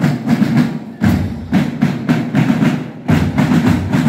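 Marching band drum section playing a march beat: dense, rapid snare drum strokes over deeper drum beats that land about once a second.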